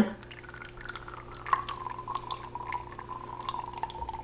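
Thick cold-process soap batter pouring from a plastic pitcher onto a spatula and spreading in the mold: soft, irregular wet plops and drips, with a faint steady hum underneath.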